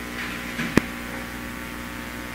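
Steady electrical hum with several steady tones in it, and one sharp click about three quarters of a second in.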